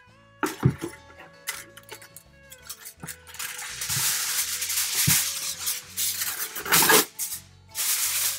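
Aluminum foil crinkling and rustling as it is cut into pieces, loudest from about three and a half to seven seconds in, with a few short crackles before and after. Background music with held notes plays under it.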